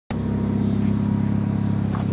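A vehicle engine idling steadily, an even low hum that does not change pitch.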